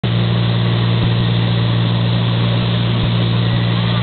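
Light aircraft's engine and propeller running at a steady cruise, a loud, even drone with a deep hum, heard from inside the cabin.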